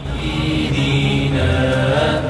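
Male chanting in Arabic of a salawat, blessings on the Prophet Muhammad, sung in long held notes.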